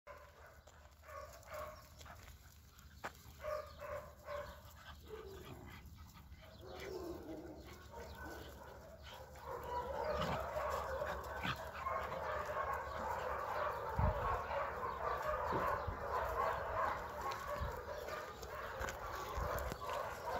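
Several dogs barking and yipping while they play-wrestle, sparse at first and then busier and louder from about halfway. A low thump comes about two-thirds of the way through.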